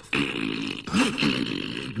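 A man's voice making a raspy, hissing throat noise instead of words, the narrator voicing the creature Gollum.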